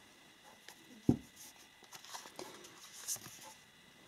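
Tarot cards being handled: quiet slides and small ticks as cards are drawn from the deck, with one soft thump about a second in.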